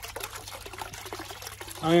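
Small garden-pond fountain splashing steadily, its jet of water falling back onto the pond surface.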